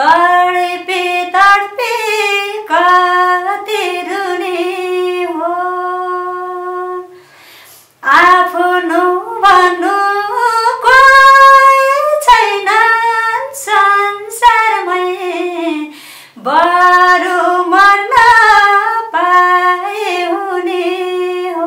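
A woman singing a song unaccompanied, holding long, sustained notes. There is a breath break about seven seconds in and another near sixteen seconds.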